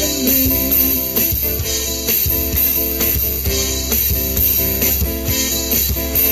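Live band playing an instrumental passage: guitars strummed over a steady drum-kit beat, with no vocals.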